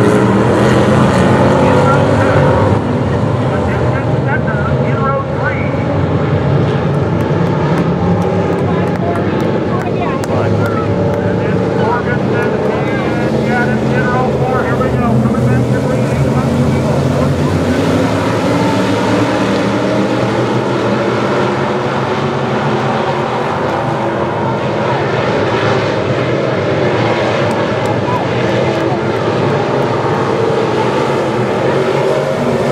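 A pack of dirt modified race cars running together on a dirt oval, their engines forming a loud, steady, layered drone that eases slightly about three seconds in.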